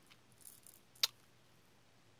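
Quiet handling of a pen-shaped plastic candy tube filled with small chocolate balls, with faint light rustling and one sharp click about a second in.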